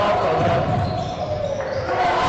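Basketball bouncing on the court during a live game in a large echoing hall, with voices calling out over it.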